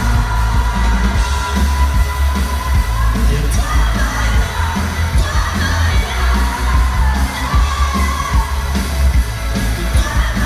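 Live Danish pop-rock band playing loudly with a heavy bass line, a male and a female singer singing together over it, and the crowd shouting along.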